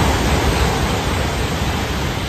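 E5 series Shinkansen passing through a station at speed without stopping: a loud rushing noise that fades slowly as the train goes by.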